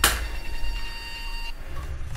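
A match struck on a matchbox: one sharp scrape as it catches and flares right at the start. A steady low hum runs underneath, with faint high tones that stop about one and a half seconds in.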